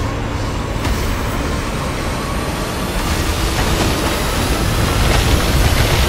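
A loud, dense rumbling roar, heaviest in the lows, that slowly grows louder, with a thin high tone gliding upward through it: a movie-trailer build-up rumble.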